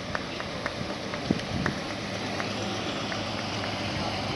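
Steady low outdoor noise of classic V8 Mercury Cougars rolling slowly past at parade pace, with a few faint short clicks scattered through it.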